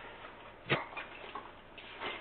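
Goods being handled among boxes and crates: one sharp knock a little before the middle, then two or three lighter clicks, over a faint steady hiss.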